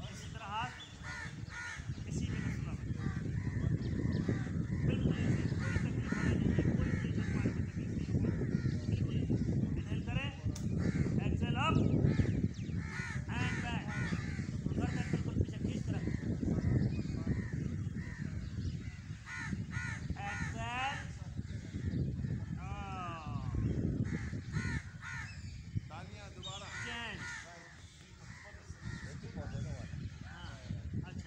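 Crows cawing repeatedly, over a steady low rumble.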